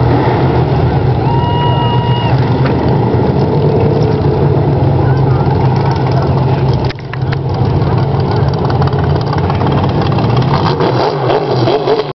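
Race car engines running steadily, with a brief dip in level about seven seconds in, and people talking over them.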